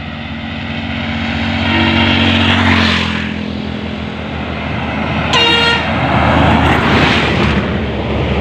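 Road traffic passing close by: engine and tyre noise swells and fades twice, the second time as a truck goes past. A short horn toot sounds about five and a half seconds in.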